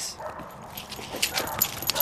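Quiet dog sounds, with a few short sharp clicks in the second half.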